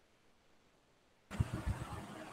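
Dead silence, then about a second and a half in, audio from a call microphone cuts in suddenly: faint background hiss with irregular low thuds.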